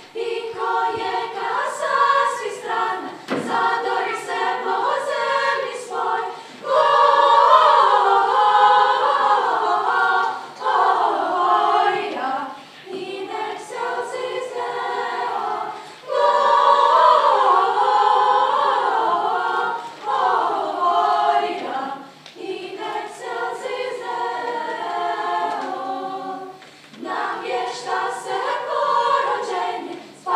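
Children's choir singing unaccompanied, several voices together, in phrases with short breaks between them.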